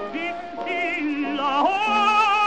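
Operatic tenor voice with a wide, fast vibrato, heard in an old, narrow-band recording. After short phrases, the voice glides up about a second and a half in to a held high note.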